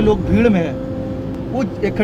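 Speech at the start, then a pause filled by a steady low hum and background noise before talk resumes near the end.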